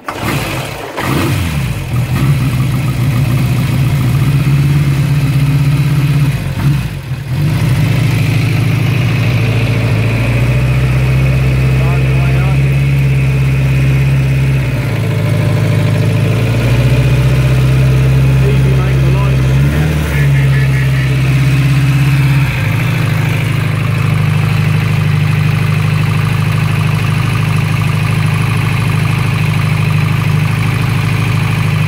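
1955 Ariel Square Four MkII 1000cc four-cylinder engine catching after a kick start on half choke, then idling. Its speed steps up and down several times through the middle before settling to a steady idle for the last several seconds.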